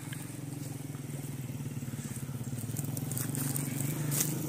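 An engine running steadily at idle, a low hum with a fast, even throb. A few faint clicks come near the end.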